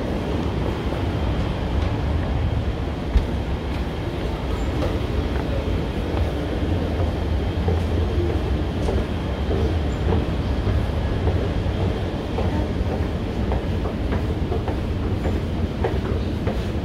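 Steady low rumble of a metro train running in the subway station, with one sharp knock about three seconds in.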